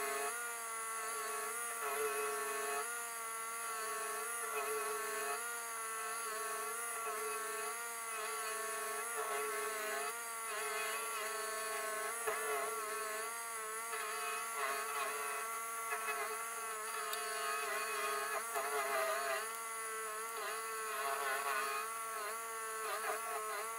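Rayco RG1635 Super Jr. stump grinder running steadily as its cutter wheel works the stump, the engine's pitch dipping and recovering again and again under the load.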